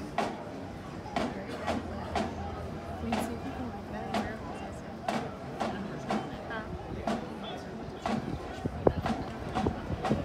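Marching drum beating a steady cadence, about one stroke a second, over the chatter of a crowd.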